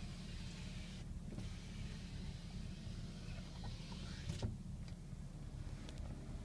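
The 2014 Ram 2500's power sliding rear window running for about three seconds and stopping with a clunk, over a steady low hum.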